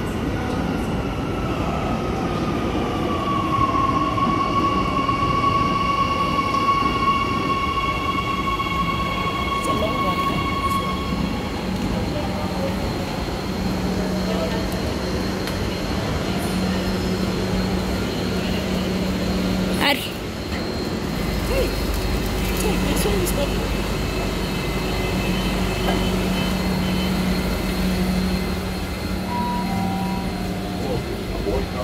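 Gautrain electric train pulling into an underground station. Its motor whine falls in pitch as it slows, then holds steady before dying away about a third of the way in. A sharp click comes about two-thirds through, then a steady low hum while the train stands at the platform.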